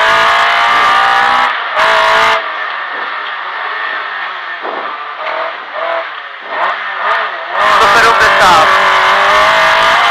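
Rally car engine heard from inside the cockpit, loud and held at high revs at first. About two and a half seconds in it drops sharply as the throttle is lifted, running much quieter for about five seconds with a few brief wavering changes in pitch. It comes back loud on the throttle about seven and a half seconds in.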